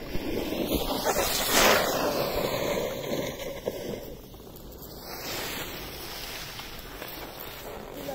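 Wind buffeting the microphone: a rough, steady hiss and rumble that swells to its loudest about a second and a half in, then settles.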